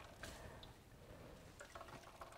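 Near silence, with faint drips and small ticks as a microfiber cloth soaked in glaze-and-water mix is squeezed out over a bowl.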